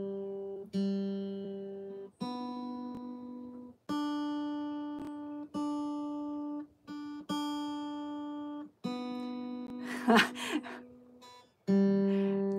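Acoustic guitar notes or chords struck one at a time, about eight in all, each left to ring and decay before being damped, the pitch stepping up and back down.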